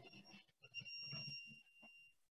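A faint, steady high-pitched electronic beep about a second and a half long, starting about half a second in, over faint low knocks.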